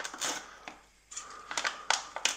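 A packet of oats being opened and handled, with crinkling rustles and a few short, sharp clicks and a brief lull about a second in.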